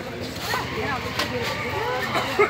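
Several people's voices calling out and talking over one another, with short scrapes of small hand shovels digging into loose rubble and sand.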